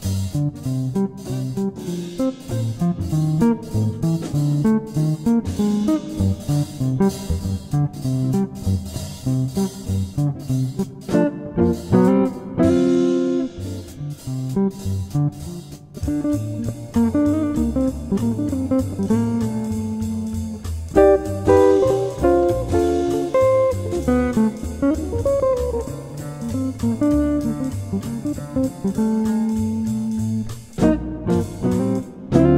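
D'Angelico Premier SS semi-hollowbody electric guitar, set up for jazz, playing single-note lines and chords in a jazzy blues style over a backing track with bass and a steady drum beat.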